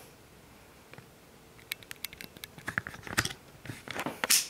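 Irregular clicks, ticks and rustles of the camera being handled and moved in close, the loudest about three seconds in, over the faint steady airflow of a running squirrel-cage tower fan.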